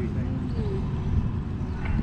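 Low, uneven outdoor rumble, with faint voices in the first half second.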